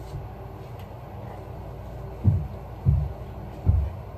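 A steady low hum, then from about two seconds in a run of deep thumps, each dropping in pitch, about three-quarters of a second apart.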